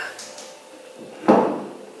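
A single dull thump about a second in, with a short rushing tail that fades over half a second: something being knocked or moved by hand.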